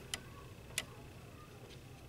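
Three faint, sharp clicks from a paintbrush being handled during watercolor painting, over quiet room tone.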